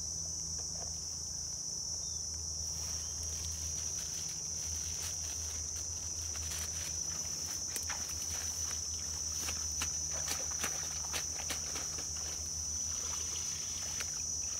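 A steady high-pitched insect chorus drones throughout. From a few seconds in it is joined by irregular rustles and clicks as a plastic basket is dipped and handled in the grass and water at the pond edge.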